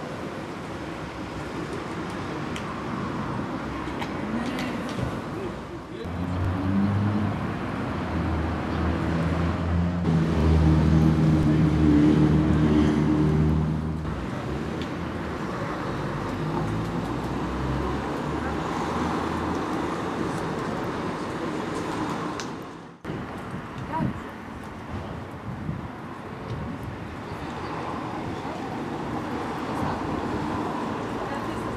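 Street ambience of people talking in the background and road traffic. For several seconds about a quarter to half of the way in, a motor vehicle engine runs close by and is the loudest sound.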